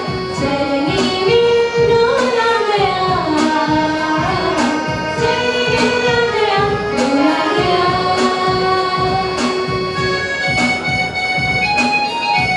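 A group of singers, women's voices in front, singing a Christmas carol over an electronic keyboard that carries a steady beat. Near the end, held keyboard notes come to the fore.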